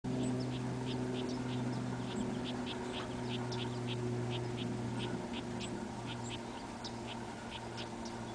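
A bird chirping in short, high notes two or three times a second, over a steady low hum.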